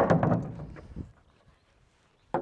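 Hammer knocking a wooden railing board loose from its framing: one sharp strike, wood clattering for about a second, a lighter knock, then the sound cuts off.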